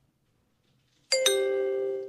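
A two-note electronic ding-dong chime, a higher note and then a lower one, starting suddenly about a second in and ringing on steadily.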